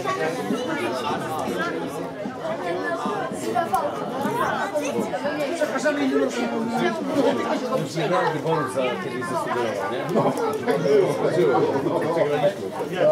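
Several people talking over one another, indistinct chatter of voices that never stops.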